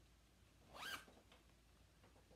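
A zipper pulled quickly once, about a second in: a short zip rising in pitch, such as a zippered project bag being opened.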